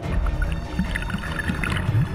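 Water splashing and bubbling around the decoy camera as it is churned through the surface, over a heavy low rumble, with scattered short gurgles.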